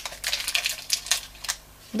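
Foil wrapper of a chicken stock cube crinkling in quick, irregular crackles as it is peeled open.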